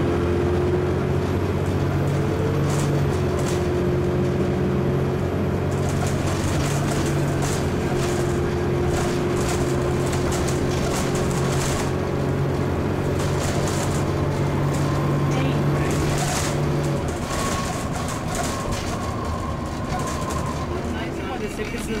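Dennis Trident 2 bus's Euro 2 diesel engine with its ZF four-speed automatic gearbox, heard from inside the saloon. The engine is held at high revs at a steady pitch for about fifteen seconds, being overrevved in gear, then the revs drop a few seconds before the end.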